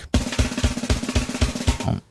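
Drum roll sound effect: an even run of snare and bass drum hits, about six or seven a second, that cuts off suddenly.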